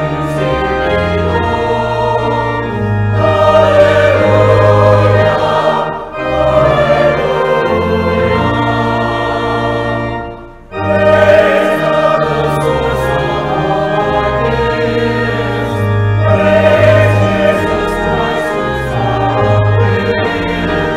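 Voices singing together in church music with instrumental accompaniment, held in long phrases, with brief breaks between phrases about six seconds and about ten and a half seconds in.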